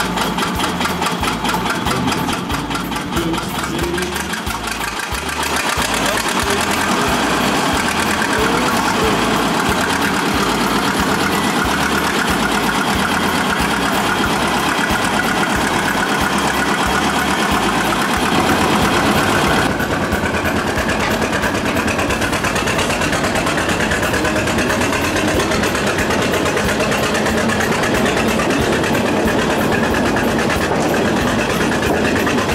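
Engine of a small narrow-gauge park-railway diesel locomotive running as it pulls the train, with a slow, uneven low chugging; it grows louder about six seconds in.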